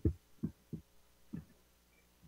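A few soft, low thumps, about four in a second and a half, from a computer being handled while a screen share is started, with near silence between them.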